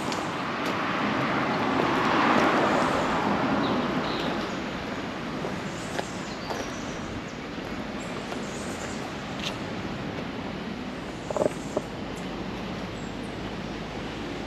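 A vehicle passing by, its noise swelling to loudest about two seconds in and fading over the next few seconds into a steady outdoor background. Two short knocks come near the end.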